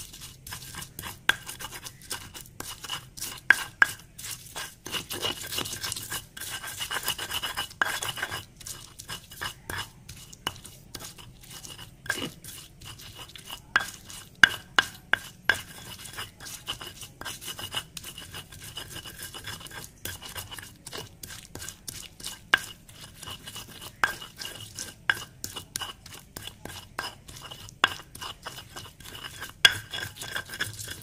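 Stone pestle grinding and crushing a wet spice paste of shallots, garlic, palm sugar and coriander seed in a stone mortar (Indonesian cobek and ulekan): a continuous run of quick gritty scrapes and knocks of stone on stone, with sharper clacks now and then.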